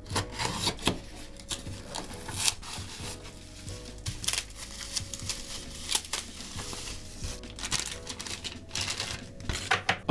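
Packaging being handled: duct tape pulled off a cardboard box, then bubble wrap crinkled as it is unwrapped, a run of irregular rustles and crackles. Quiet background music plays underneath.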